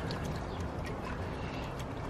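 Steady low background rumble with no distinct event, only a few faint ticks.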